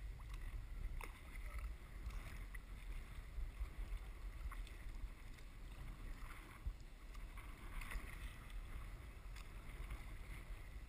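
Kayak paddling heard faint and muffled through a sealed action-camera housing: light water splashes and drips from the paddle over a steady low rumble.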